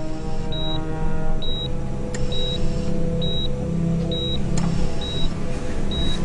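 Hospital patient monitor beeping steadily, one short high beep a little under once a second, pacing the patient's heartbeat, over a sustained low music score.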